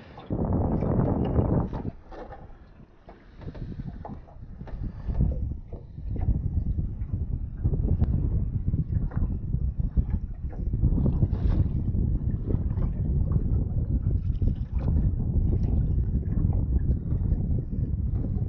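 Wind buffeting the microphone on a small boat on choppy water: an uneven low rumble that eases for a few seconds shortly after the start, then returns, with a few faint ticks.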